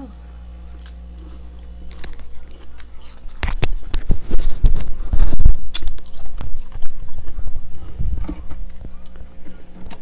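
Freezer frost crunching as it is bitten and chewed close to the microphone. The crunches start about three and a half seconds in, are loudest for the next couple of seconds, and ease off toward the end.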